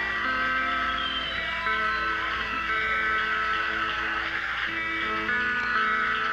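Live rock band playing: electric guitar, keyboards and bass hold long chords that change every second or so.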